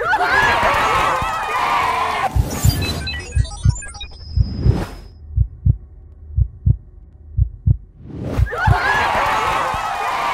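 Heartbeat sound effect added in editing for suspense: pairs of low thumps about once a second from about three seconds in until about eight seconds in, with a whoosh near the middle. Overlapping excited shouting voices fill the start and return near the end.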